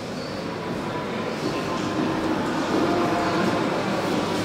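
Indistinct murmur of people talking over a steady room noise in a large hall, growing slowly louder.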